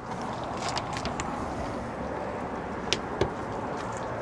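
Steady outdoor background noise with a few faint light clicks, two of them close together about three seconds in.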